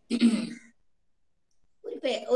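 A woman's brief vocal sound, about half a second long, of the throat-clearing kind, then a silent pause of about a second before her speech resumes near the end.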